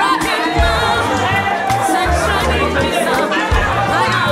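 Loud music with a stepping bass line, and a crowd singing along and chattering over it.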